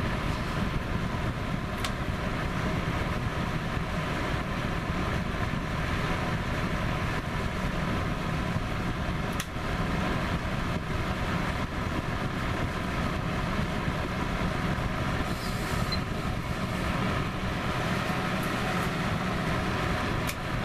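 Patton HF-50 electric heater's fan running steadily: air rushing through its deeply pitched blades over a low motor hum. A brief click comes about two seconds in and another about halfway through.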